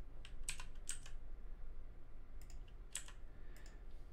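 Computer keyboard and mouse clicks: a handful of light, irregularly spaced clicks over a faint low hum, made while editing on the computer.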